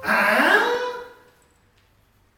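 A young man's loud yell that rises in pitch, lasting about a second before dying away.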